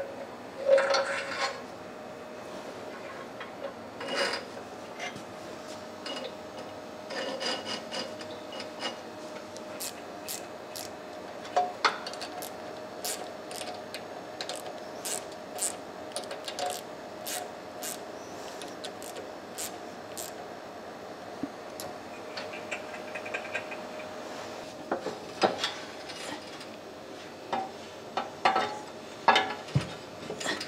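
A hand socket ratchet clicking in quick runs as bolts on a steel shop press are turned, with clanks and rattles of steel parts and tools.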